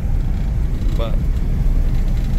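Steady low rumble of a 1962 Ford Thunderbird cruising along a gravel road, heard from inside the cabin: engine and road noise at an even level.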